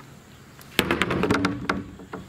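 Wooden boards being handled: a quick run of sharp knocks and clatter, starting a little under a second in and lasting about a second.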